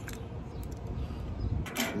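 A few light clicks and rattles from a Daiwa slow-pitch jigging reel being turned over in the hands, over a low steady rumble.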